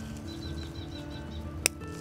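Soft background music with held notes, and a single sharp snip about one and a half seconds in as scissors cut through a tomato stem.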